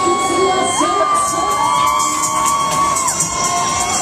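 Riders on a spinning fairground thrill ride screaming: two long, high, held screams overlapping, the second rising in about a second in and both breaking off near the end, over general fairground crowd noise.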